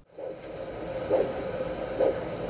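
Handheld Doppler ultrasound probe picking up radial artery blood flow: a steady hiss with a rhythmic whoosh just under once a second, one surge per heartbeat.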